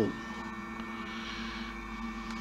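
Steady electrical hum with a few faint constant high tones over a low rumble, from a battery charger running on a battery bank.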